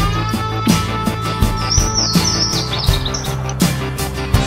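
Background music with a steady beat and a held note that glides up in pitch near the start. A quick run of high chirps comes about halfway through.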